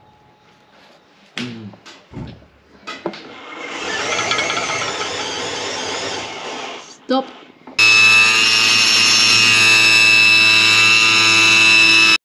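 Table saw with a woodcutting blade cutting aluminium angle: a loud, ringing whine that starts suddenly about eight seconds in and cuts off at the end. Before it come a few knocks and a softer rushing noise.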